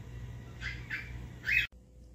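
Three short, high bird-like chirps over the steady low hum of a small electric fan. The sound cuts off suddenly a little before the end, as at an edit.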